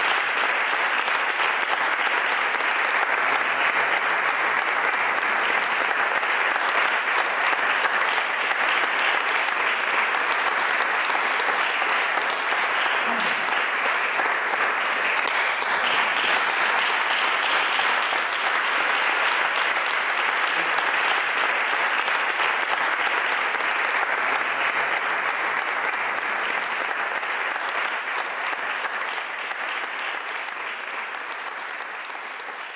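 Audience applauding, a steady, dense clapping that eases off slightly near the end.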